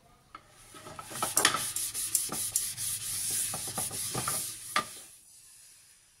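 Spatula stirring thin egg batter in a ceramic bowl: a rough scraping rub with scattered clicks, starting about half a second in and stopping about five seconds in.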